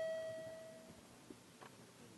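A single chime tone that fades out over about a second, sounded as the clerk records a vote in a legislative chamber, followed by faint room noise.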